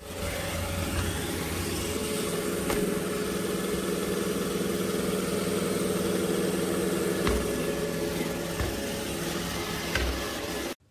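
iRobot Roomba j7+ robot vacuum running as it drives across a tile floor: a steady whir of its vacuum fan and brushes with a hum under it, and a faint tick twice.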